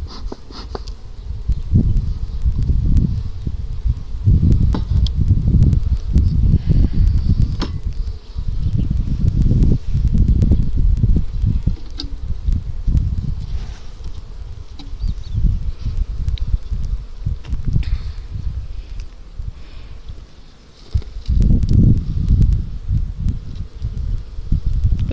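Honeybees buzzing around a hive opened up for inspection, under a heavy, uneven low rumble, with a few sharp clicks of handling.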